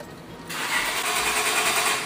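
Chevrolet Malibu being started: a loud burst of engine-start noise begins about half a second in, holds for over a second and cuts off suddenly.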